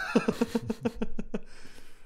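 A person laughing: a quick run of about ten short repeated voiced pulses lasting about a second and a half, trailing off into a breathy sound near the end.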